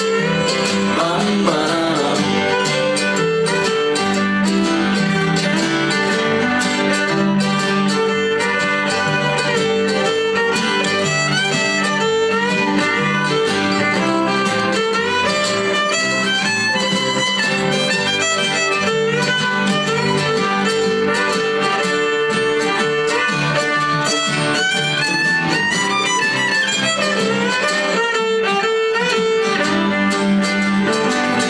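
Live acoustic string band playing an instrumental passage, fiddle carrying a gliding melody over strummed acoustic guitar and a steady bass line, in a bluegrass-country style.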